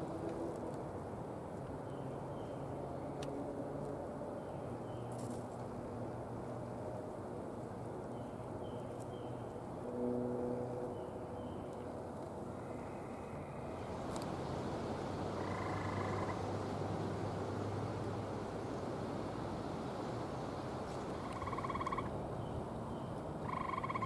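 Gray tree frogs calling in the background: short trills, each about a second long, heard around two-thirds of the way through and again near the end, over a steady outdoor hiss. Short faint high chirps come now and then in the first half.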